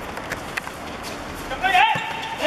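Open-air football court ambience with a couple of short sharp knocks, then a loud shout near the end as play goes on in front of the goal.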